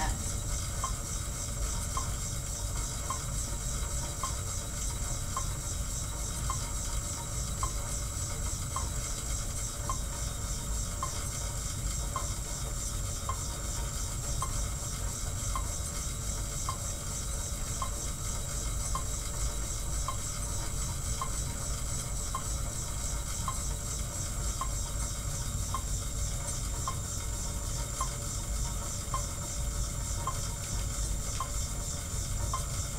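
Monark mechanical cycle ergometer being pedalled steadily: a continuous whirr from the spinning flywheel and its friction belt, with a faint light click about once a second in time with the pedalling.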